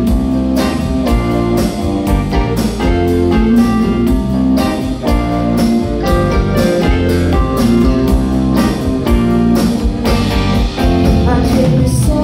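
Live band playing: electric guitar, electric bass, drum kit and electric keyboard together, with a steady drum beat.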